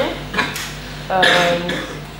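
A woman's drawn-out hesitation sound, 'euh', preceded by a few short sharp clicks or clinks in the first half-second.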